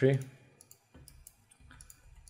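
A few faint, short clicks of a computer mouse as the user clicks in the modelling software.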